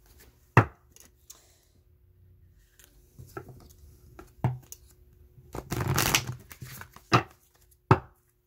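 Tarot cards and deck boxes being handled on a table: a few sharp taps as things are picked up and set down, and a longer rustle of cards about six seconds in. A faint steady hum sits underneath.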